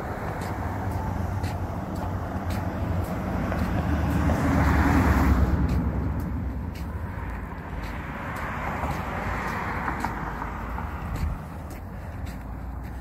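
Road traffic passing on the street: tyre and engine noise from a passing car swells to a peak about halfway through and fades, followed by a second, weaker pass.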